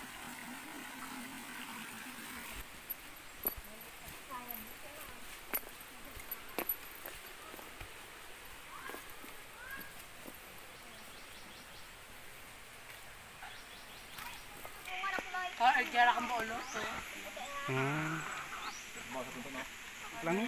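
Faint outdoor ambience with a few scattered light taps and clicks, then several people's voices in the last quarter.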